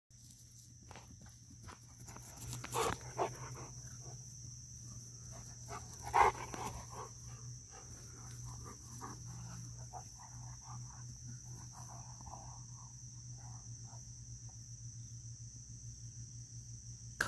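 Dogs outdoors making a few short, sharp vocal sounds about three and six seconds in, the one at six seconds the loudest, with softer short sounds later on. A steady faint high hum runs underneath.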